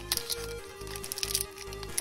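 Background music with a few held notes, under the crinkling and tearing of a foil Pokémon booster pack wrapper being opened by hand.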